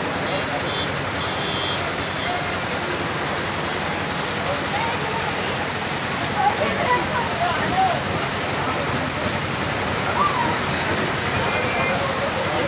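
Heavy rain falling steadily on a flooded street, a constant even hiss. Faint voices come through the rain about halfway through.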